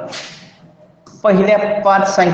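A short hiss that fades within the first half-second, then a pause, then a man's voice speaking from about a second and a quarter in.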